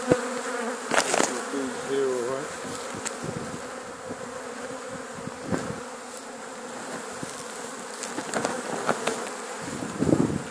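A swarm of honey bees buzzing: the steady hum of many bees at once. About two seconds in, one buzz bends up and down in pitch, and a few sharp knocks break in now and then.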